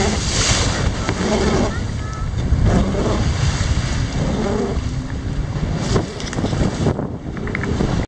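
Wind buffeting the microphone on a motorboat running fast through choppy sea, with the hull slapping the waves and spray splashing at the bow.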